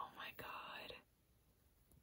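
A woman's short breathy whisper, about a second long, then near silence.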